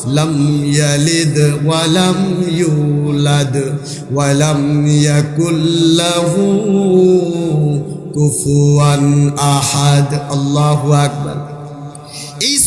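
A man's voice chanting a melodic recitation through a public-address microphone, in long phrases held on a steady pitch, with short breaks about 4 and 8 seconds in.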